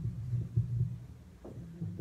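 Handheld microphone being picked up and handled: a low, uneven thumping rumble, with a faint tap near the end.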